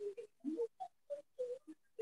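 A person's voice coming through a video call in about eight short, broken-up fragments, each only a fraction of a second, with silent gaps between them.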